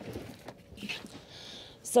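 Small 12-volt fridge being slid out from under a bed: a few faint knocks and a short, soft sliding scrape.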